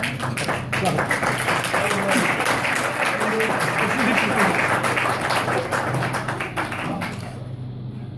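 Wedding guests applauding, many hands clapping at once with voices mixed in, dying down about seven seconds in.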